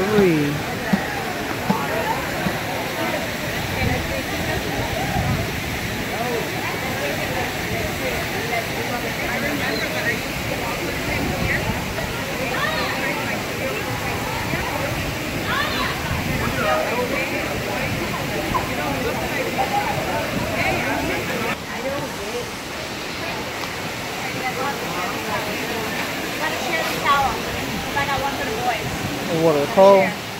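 Steady rush of a waterfall and shallow rocky river, heard under the chatter of many people talking around it.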